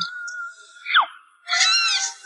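A held high tone, then a quick falling whistle-like glide about a second in, followed by a young girl starting to wail in a rising-then-falling cry near the end.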